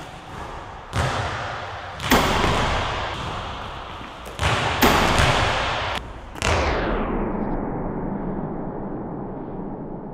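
A run of loud thuds and slams from a basketball being dunked through a rim and bouncing on a hardwood gym floor, each with a long echo in the large gym. The last one comes about six and a half seconds in and dies away.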